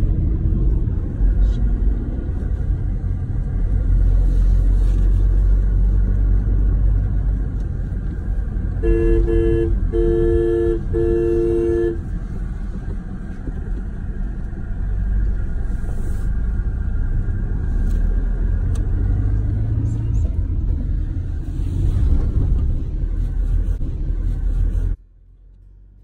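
Steady road and engine rumble inside a moving car's cabin, with a car horn sounding three blasts in quick succession about nine seconds in, the last one a little longer.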